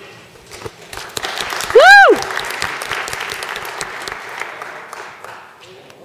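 Theatre audience applauding for several seconds after a contestant is introduced, fading out near the end. About two seconds in, one loud voiced whoop rises and then falls in pitch above the clapping; it is the loudest moment.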